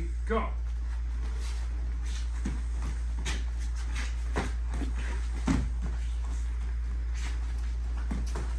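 Scattered thuds, slaps and scuffs of two people sparring in padded gloves on foam mats: strikes and footwork at irregular intervals, the loudest about five and a half seconds in, over a steady low hum.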